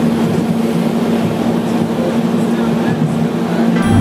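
Snowdon Mountain Railway rack train climbing, heard from inside the carriage: a steady rumble with a low, constant hum.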